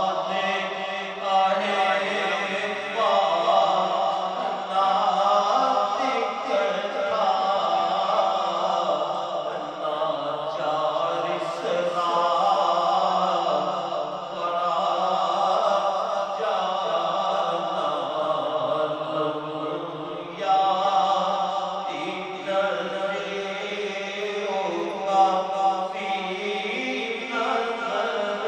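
A man's voice reciting a naat (devotional poem in praise of the Prophet) into a microphone, sung in long drawn-out chanted phrases with short pauses between lines.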